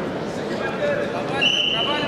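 Arena crowd and coaches' voices calling out over a wrestling bout, with a short, steady, shrill whistle blast starting about one and a half seconds in.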